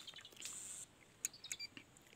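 Faint quiet background with a brief high hiss about half a second in, then a few soft clicks and short high chirps in the second half.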